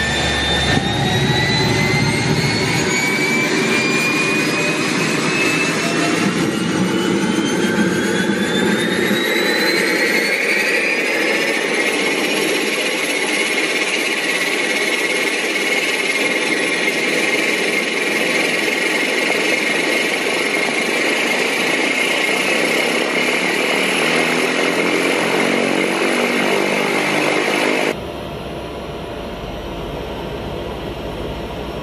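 Pratt & Whitney PT6 turboprop engine of a Cessna 208 Caravan starting: a turbine whine rises steadily in pitch over about the first twelve seconds as the engine spools up with the propeller coming round, then holds steady at idle. Near the end it switches to a quieter, duller engine sound heard from inside the cabin.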